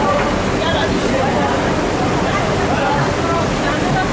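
Garment-factory floor noise: a steady loud rush with people talking in the background.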